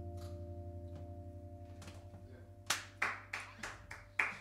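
The band's last chord, with handpan notes ringing over a low throbbing tone, slowly fades out. About two-thirds of the way in, a few separate hand claps begin, about five in all.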